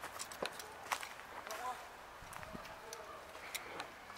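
Footsteps crunching on gravel, dry leaves and litter, heard as irregular sharp clicks, with faint indistinct voices in the background.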